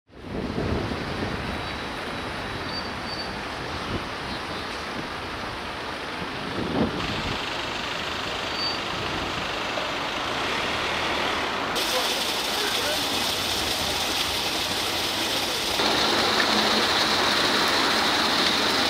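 Outdoor street ambience: steady traffic noise with distant voices, its character changing suddenly at each of several cuts. For the last couple of seconds, water splashes from a fountain spout into its basin.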